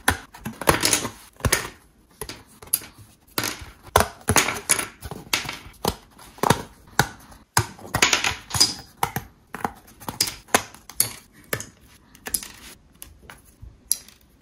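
Thin laser-cut plywood pieces being popped out of their sheet and dropping onto the pile on a wooden table: an irregular run of sharp wooden snaps and clicks, several a second with short pauses.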